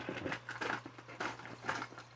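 Cardboard box being opened and its contents handled: faint, irregular rustling and light clicks of cardboard flaps and plastic lure packages.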